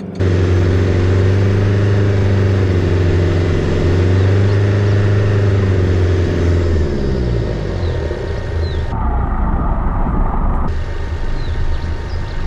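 A four-wheel drive's engine pulling steadily up a steep rocky hill in second gear low range, a deep, steady drone. About two-thirds of the way in the note turns rougher and less even.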